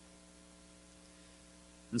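Faint, steady electrical mains hum picked up through the microphone's sound system, with no other sound; a man's voice cuts in just at the end.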